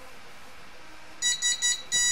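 An Arduino-driven active buzzer beeps Morse code SOS at one steady high pitch. About a second in come three short beeps (the S), and the first long beep of the O starts at the very end.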